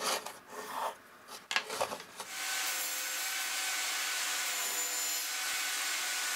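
A few scratchy pencil strokes on a pine block. Then, about two seconds in, a benchtop table saw starts running steadily, an even, loud whirring hiss with a faint whine.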